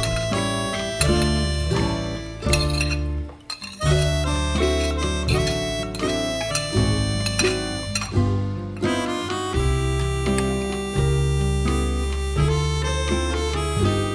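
Instrumental background music with a steady repeating bass line. It dips briefly about three and a half seconds in.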